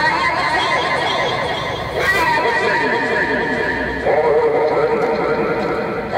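Electronic sounds from a smartphone app played by gesture: layered sustained warbling tones with many repeated falling glides, the sound shifting to a new layer about every two seconds.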